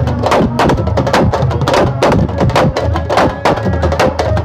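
A group of drummers playing goblet-shaped hand drums together in a fast, steady rhythm of sharp, closely spaced strokes.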